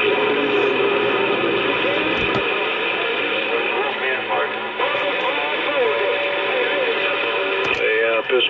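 Uniden Bearcat CB radio receiving an incoming station through its speaker. Garbled, hard-to-follow voice audio comes through hiss, with steady whistling tones laid over it.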